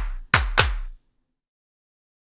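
The last few percussive hits of a rock song: three strikes with low notes that drop in pitch as they fade. The track cuts off about a second in, leaving silence.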